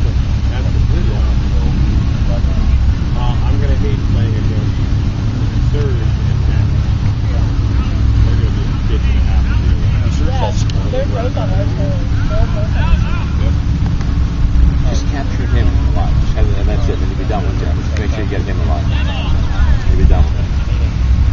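Indistinct distant voices from players and onlookers over a steady low rumble, with a few short knocks near the middle.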